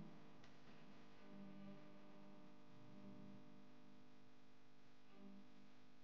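Near silence: a faint, steady background tone with no distinct events.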